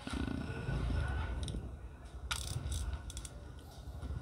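A Korean-made GT-3000 spinning fishing reel being handled and turned in the hands: a low rumble, with a few light clicks about two seconds in.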